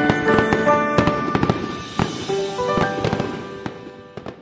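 Firework sound effect, with many sharp pops and crackles, over music with held ringing notes; the whole fades out steadily.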